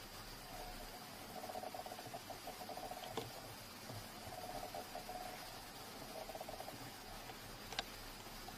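Cat purring faintly in three breath-long stretches with short gaps between them. Two small clicks, about three seconds in and near the end.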